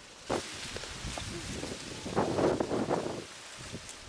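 Figs tipped from a plastic bucket into a plastic crate, starting with a sudden rattle. About two seconds in, a louder burst of rustling and knocking follows as fig-tree leaves and fruit are handled.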